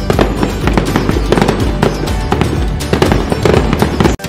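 Fireworks effect: a rapid run of sharp firecracker pops and crackles over festive music.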